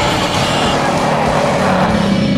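Dinosaur roar sound effect: one long, rough roar that sinks lower near the end, over background music.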